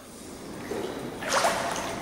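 Pool water lapping and splashing around a swimmer standing in an indoor pool, with a louder splash about a second and a half in.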